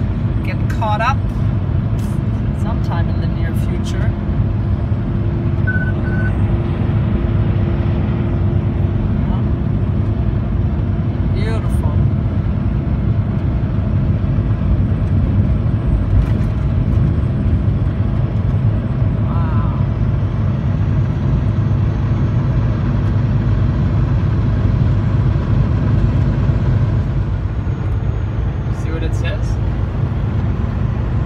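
Steady drone of a semi truck's engine and tyre noise heard from inside the cab at highway speed, with a low hum that holds for several seconds near the start and a few faint clicks.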